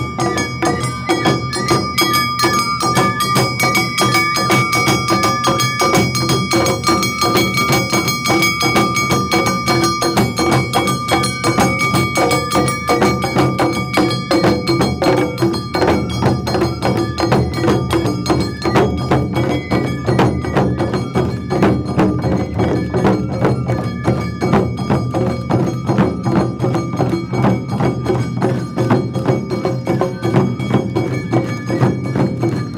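Awa Odori festival band: large hand-held taiko drums beaten in a fast, steady rhythm with metallic bell-like strikes, and a bamboo flute playing long held notes over them.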